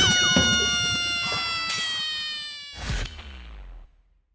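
Outro sound effect over the closing logo: a long, slowly falling pitched tone that starts with a loud crash of noise and fades out over about four seconds, with a second swell of noise near the end before it cuts to silence.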